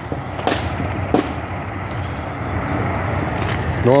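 Steady outdoor background noise that slowly swells toward the end, with a couple of short clicks about half a second and a second in.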